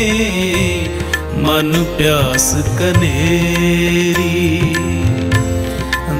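Sikh shabad kirtan music, a devotional hymn played as a continuous melodic passage with sustained notes and gliding phrases between sung lines.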